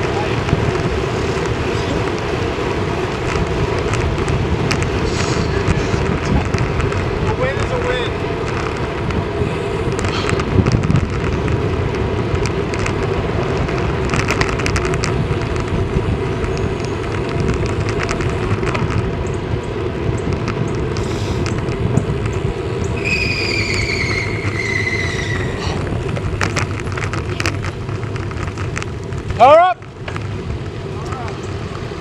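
Wind and road noise from a road bike riding at speed, with a steady hum from the tyres on the tarmac. In the last quarter a high squeal lasts about three seconds, falling slightly in pitch, and just before the end comes a brief loud sound.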